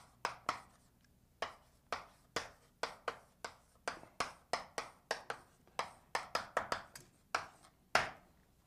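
Chalk writing on a blackboard: a quick, irregular run of short taps and scrapes, about three strokes a second, as words are written out.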